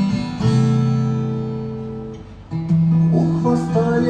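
Acoustic guitars strumming chords: a chord struck about half a second in rings and slowly fades, then a new chord is struck about two and a half seconds in.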